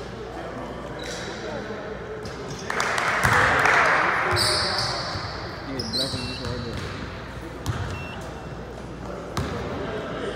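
Basketball bouncing on a hardwood gym floor in an echoing hall, with spectators' voices around it. About three seconds in there is a louder burst of noise, and two short high squeaks follow.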